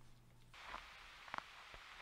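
Near silence: a faint low hum that stops about half a second in, then faint hiss with a few soft ticks, most likely the gag's contact microphone being handled as it is put on.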